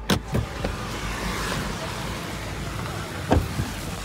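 Car door unlatching with a sharp click as the inside handle is pulled, then a steady hiss of rain coming through the open door, and a single thump about three seconds in.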